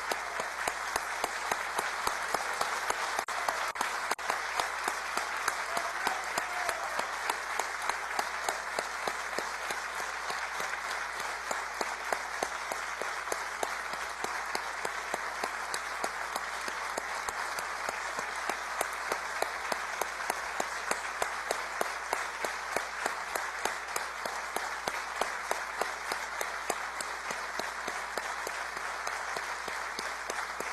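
A large crowd applauding at length, the clapping falling into a steady rhythm of about two beats a second.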